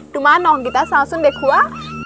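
A woman talking rapidly in a high, animated voice, with a steady low hum underneath.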